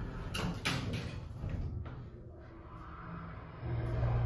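Thyssenkrupp hydraulic elevator doors sliding shut, with a brief clatter about half a second in. Near the end the hydraulic pump motor starts with a steady low hum as the car begins to rise.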